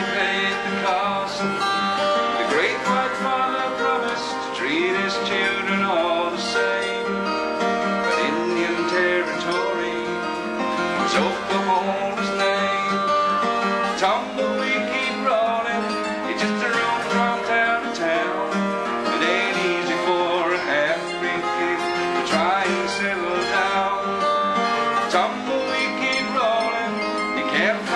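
Steel-string acoustic guitar playing a country-folk song, with a man singing at times.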